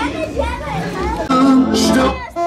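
Live music with people talking and children's voices over it; held instrument notes grow louder about halfway through.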